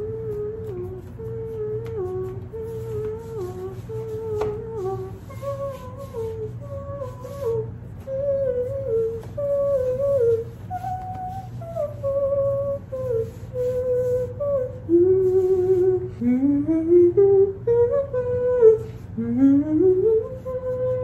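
A woman humming a wordless tune, one melodic line moving in short steps, with upward sliding notes near the end.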